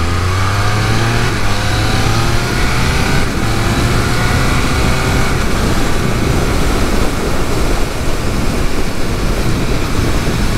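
Triumph Speed Triple 1200 RS's inline three-cylinder engine accelerating hard, its note rising over the first couple of seconds. It then runs on steadily at speed under a rush of wind noise.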